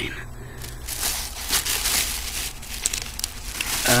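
A bag crinkling as records are handled and pulled out of it, a dense run of irregular crackles starting about half a second in.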